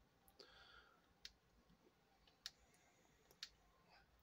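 Near silence broken by sharp single button clicks, about one a second, as photos are paged through on screen.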